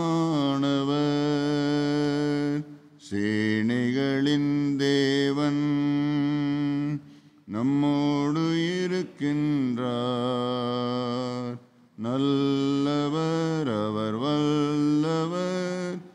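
A man singing a hymn solo and unaccompanied into a microphone, in four long phrases of slow, held notes that step up and down, with short breaks between them.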